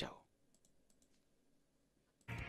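Near silence after the last word of a spoken goodbye, broken by a few faint, short clicks.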